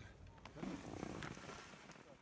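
A person's faint, brief murmured voice over steady outdoor background hiss, fading out near the end.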